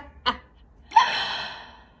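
A woman's voice: a last short laugh pulse, then about a second in a sharp, breathy gasp that fades away over most of a second.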